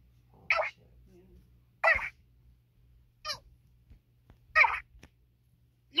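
Four short, high-pitched vocal squeaks, each well under half a second, spaced about a second and a half apart.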